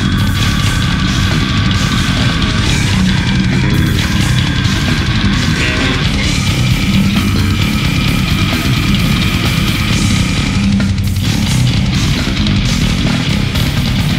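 Brutal death metal band recording with a six-string Spector bass played fingerstyle along with it, loud and continuous.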